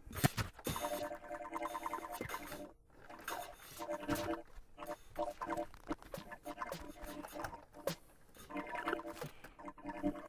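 Acousmatic electroacoustic music playing back: a repetitive, pulsing texture of short, gritty pitched bursts and clicks in clusters. It breaks off briefly about three seconds in and again near eight seconds.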